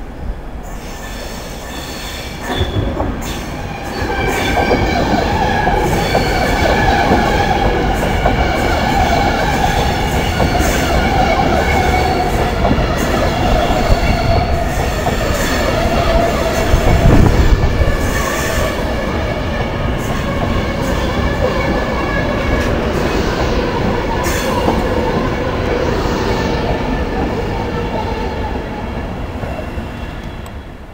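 A Virgin Trains Class 390 Pendolino electric train passing close at low speed, with wheels squealing over the track and a running rumble. It grows loud about four seconds in, is loudest about halfway through, and dies away near the end as the last coach passes.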